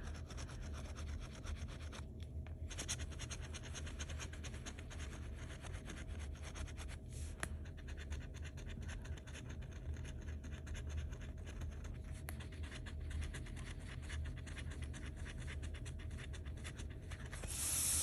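Metal bottle-opener scratcher scraping the latex coating off a paper scratch-off lottery ticket in rapid, continuous strokes, with brief pauses about two and seven seconds in.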